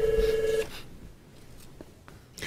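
A single steady electronic telephone tone lasting just over half a second, cutting off sharply.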